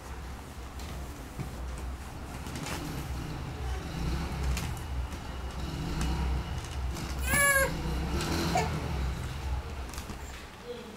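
A baby's brief, high-pitched, wavering squeal about seven seconds in, with a fainter short cry a second later, over scattered faint knocks.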